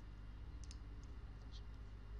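A few faint computer mouse clicks, over a low steady hum.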